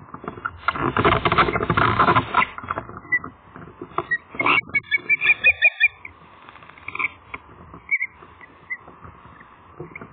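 Osprey calling: scattered single sharp chirps and, about five seconds in, a quick run of about six whistled notes. A loud rushing noise fills the first couple of seconds.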